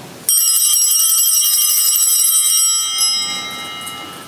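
Sanctus bell rung at the elevation of the chalice, marking the consecration of the wine. It is struck about a quarter second in and rings on with a cluster of high tones, slowly fading.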